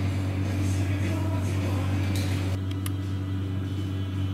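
A steady low mechanical hum from an appliance or machine in the bar, with a brief hiss about two seconds in and a faint click shortly after.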